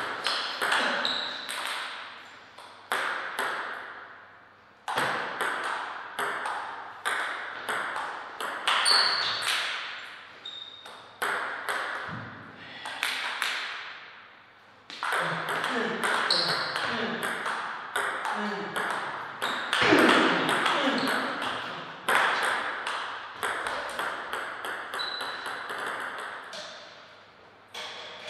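Table tennis ball knocking back and forth between bats and table in several fast rallies: a run of sharp clicks a few per second, with short pauses between points.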